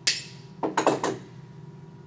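Wire cutters snipping the excess off a thin metal eye pin: one sharp click right at the start.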